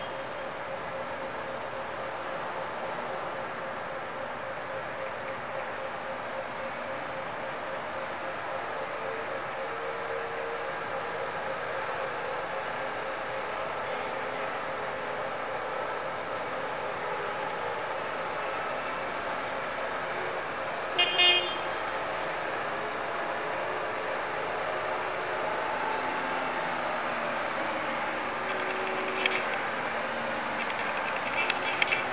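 Forklift engine running steadily and growing slowly louder as the forklift approaches, with a brief honk of its horn about two-thirds of the way through.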